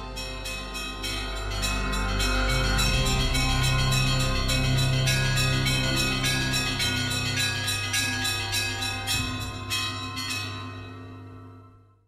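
Closing theme music built on chiming bells: a quick, even run of bell strikes, about three or four a second, over a steady low tone, fading out near the end.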